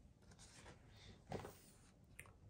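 A page of a hardcover picture book being turned by hand: faint paper rustling and sliding, with a slightly louder swish of the page about one and a half seconds in.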